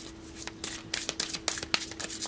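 A deck of tarot cards being shuffled by hand: a run of quick, irregular papery clicks and snaps.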